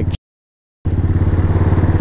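125cc motorcycle engine running steadily under a rush of wind and road noise while riding. The audio cuts out completely for about two thirds of a second near the start, then the engine sound returns.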